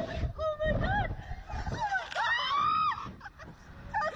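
A rider on a slingshot ride giving a series of short high-pitched squealing shrieks, the longest and loudest just past halfway, over wind buffeting the microphone.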